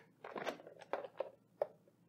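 Plastic lid of a countertop blender jar being unlatched and lifted off: a handful of short, faint clicks and scrapes.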